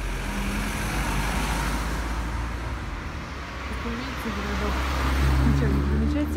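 Car traffic on a town street: steady road and engine noise, with a car's low engine rumble growing louder over the last couple of seconds as it comes close. Brief voices near the end.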